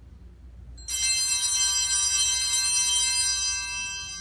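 Altar bells (Sanctus bells) ringing at the elevation of the consecrated host. A cluster of small bells starts about a second in with many high, steady tones, is rung evenly for about two and a half seconds, then dies away.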